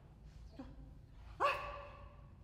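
A woman's voice speaking in short, sharp phrases; the loudest is a single high, forceful exclamation about one and a half seconds in.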